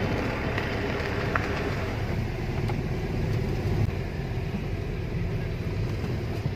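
Steady engine and road rumble of a moving car, heard from inside the cabin.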